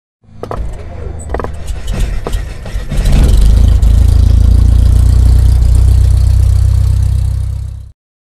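Channel logo intro sound effect: a few sharp clicks and crackles, then from about three seconds in a loud, deep, steady rumble that cuts off suddenly just before the end.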